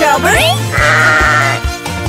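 A cartoon sheep's wavering "baa" bleat, lasting under a second, over a bouncy children's-song backing track with a steady beat.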